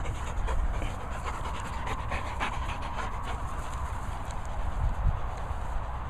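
A dog panting close to the microphone, in quick breathy strokes over a steady low rumble.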